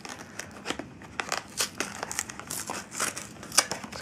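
Sealed cardboard card-deck box being pulled and torn open by hand: irregular crinkling, scraping and tearing of the glued flaps, with a sharper snap about three and a half seconds in.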